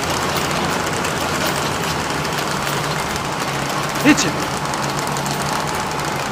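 Steady running noise of a paper-bag-making machine, an even mechanical hum and rattle with no change in pace. A brief voice-like sound cuts in about four seconds in.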